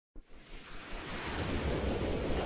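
A whoosh sound effect for an animated logo intro: a rush of noise with a low rumble that swells up from silence just after the start and keeps building.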